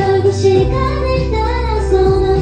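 A woman singing a pop melody into a microphone over a backing track with heavy bass, as heard from the audience at a live concert.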